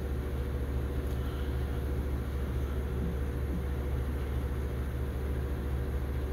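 A steady low machine hum.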